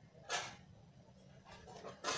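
Scissors cutting thin blouse cloth: one short crisp swish about a third of a second in, then faint rustling of the cloth near the end.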